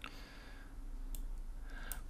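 Two faint clicks at a computer, one right at the start and a fainter one about a second in, over a low steady hum.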